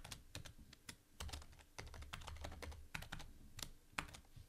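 Typing on a computer keyboard: an irregular run of quiet keystroke clicks as a password is entered.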